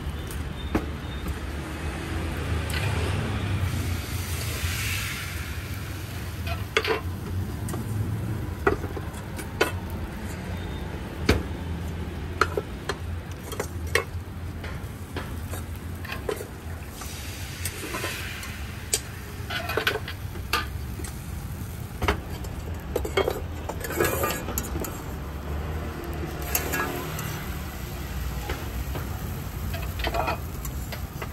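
Metal utensils clicking and scraping against small steel woks as batter for thin coconut crepes is swirled and cooked over charcoal, with faint sizzling and several short scrapes. A steady low hum runs underneath.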